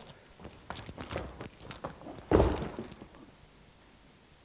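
Scuffling steps on a foam mat, then a heavy thud a little over two seconds in as a man is thrown down onto the mat in a kung fu takedown.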